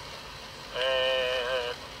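A man's drawn-out hesitation sound, a held 'ehh', lasting about a second from partway in, over a low steady background hum.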